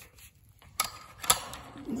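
Electric-fence gate handle being unhooked: its metal hook and spring clink twice against the wire loop, two sharp clicks about half a second apart.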